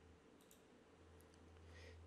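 Near silence with a few faint computer mouse clicks, about half a second and a little over a second in, over a faint low hum.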